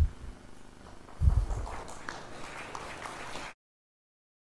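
Low thumps and rustling on the lectern microphone, with faint audience applause after the talk, until the sound cuts off abruptly near the end.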